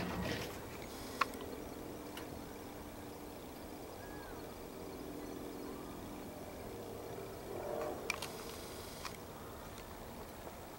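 Crows cawing: one harsh call right at the start and another about eight seconds in. A sharp click comes about a second in, and a faint steady low hum runs between the calls.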